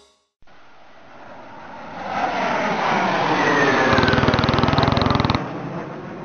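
A motor vehicle swelling in loudness as it draws near, its pitch falling as it passes, with a fast pulsing from the engine late on. It cuts off suddenly a little after five seconds, leaving a faint fading rumble.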